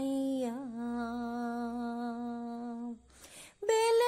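A lone unaccompanied voice humming a long steady note, with a small dip in pitch just before it settles. It breaks off about three seconds in, and singing picks up again at a higher pitch near the end.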